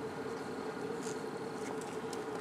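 A steady buzzing hum holding one pitch throughout, with a fainter high-pitched tone above it.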